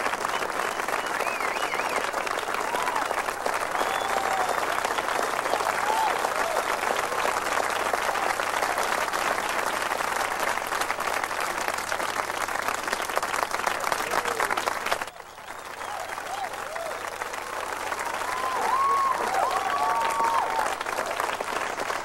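Studio audience applauding, with a few scattered shouts. The applause dips briefly about fifteen seconds in, then swells again.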